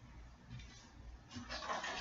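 Quiet room tone, then about a second and a half in, a rustle and handling noise as a box in plastic packaging is picked up.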